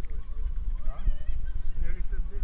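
Steady low rumble of a car driving, heard from inside the cabin, with a short pitched sound about a second in and another near the end.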